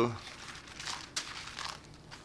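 Thin Bible pages rustling and crinkling as they are turned to find a passage, in a few irregular bursts.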